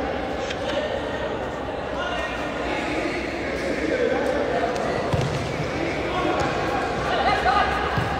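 Indistinct shouting from players and spectators, echoing in a large indoor hall, with a few thuds of a futsal ball being kicked and bouncing on the concrete court.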